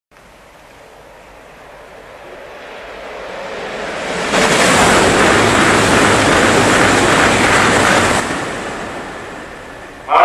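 JR East E2 series Shinkansen passing through the station at speed without stopping: a rush of air and wheels on rail swells as it approaches, turns abruptly loud about four seconds in while the cars sweep past, and drops away about eight seconds in, fading as the train leaves.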